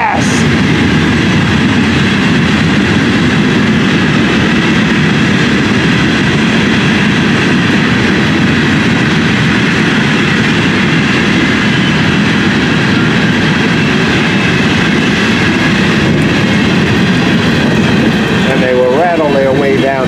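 Empty open-top hopper cars of a freight train rolling past close by: a loud, steady rumble and rattle of steel wheels on the rails.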